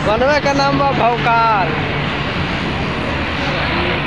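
Steady street traffic noise, with a man's voice briefly at the start.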